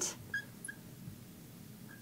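Faint, brief squeaks of a marker writing on a glass lightboard, a few short chirps in the first second and one more near the end.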